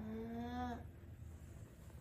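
One drawn-out, steady moan from a person's voice, lasting just under a second and rising slightly in pitch.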